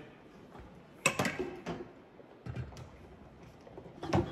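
Quiet room with a sharp knock about a second in, then a few softer bumps and handling noises: someone moving about and picking up an empty fiberglass water-softener resin tank.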